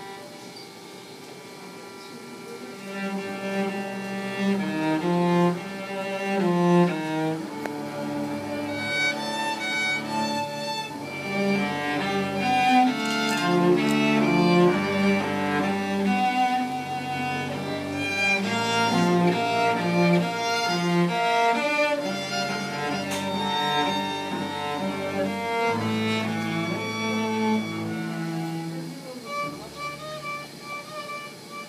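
A live string trio of violin, cello and double bass playing together. It opens softly on a held note, swells into a fuller passage with a moving bass line about three seconds in, and eases off near the end.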